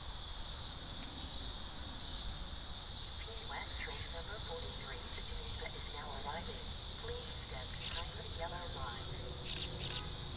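Steady, high buzzing chorus of late-summer insects. Faint, distant voices come and go through the middle.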